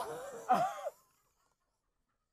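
A person's strained, wheezing cry of "ai!" about half a second in, short and breaking off quickly.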